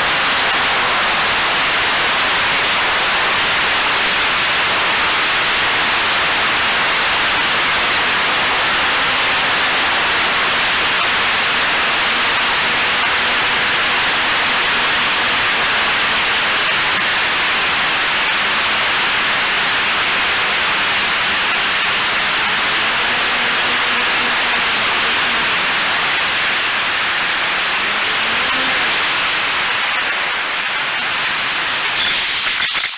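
Loud, steady hiss on the onboard camera of a Reptile Dragon 1200 FPV plane in flight. Under it is a faint pitched hum that rises in pitch near the end.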